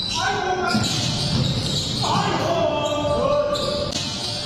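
Basketball dribbled on an indoor court, with players' voices calling out twice: once near the start, and again for over a second from about two seconds in.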